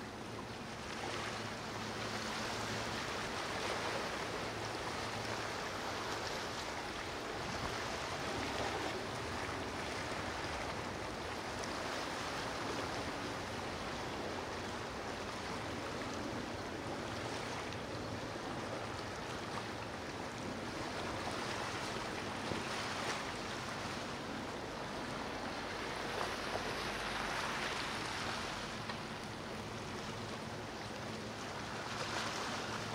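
Steady wash of waves, swelling and easing every few seconds, with a faint low hum underneath.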